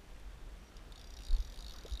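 Fly reel's click-and-pawl drag buzzing in a fast steady ratchet from about a second in, as a hooked brown trout takes line. A low thump on the microphone comes just after it starts.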